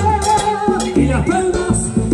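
Salsa orchestra playing live, with percussion and a repeating bass line.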